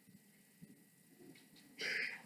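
A short, loud, breathy hiss near the end, over a quiet room with faint soft taps.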